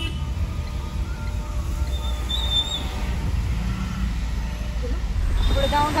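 Steady low road and engine rumble inside the cabin of a moving car, driving on a rain-wet road.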